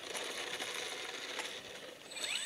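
Small electric RC biplane rolling out on rough asphalt after landing, a steady, fairly quiet fast rattle of its wheels and airframe over the pavement.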